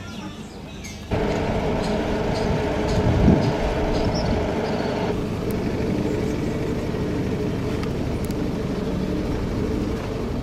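Steady engine and road hum of a moving tour vehicle, starting abruptly about a second in after a quieter background, with a brief low bump a couple of seconds later.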